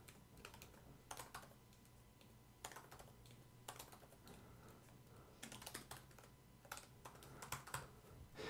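Faint computer keyboard typing in short clusters of keystrokes with pauses between them, over a faint steady low hum.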